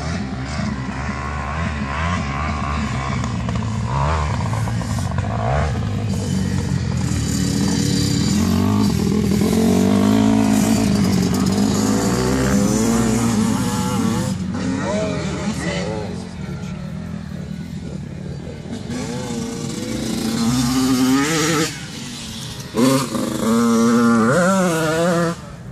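Dirt bike engine running loudly, its revs rising and falling.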